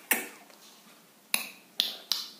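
Three sharp clicks from a stiff paper picture card being handled and slid over a card box: one at the start, then two close together near the end.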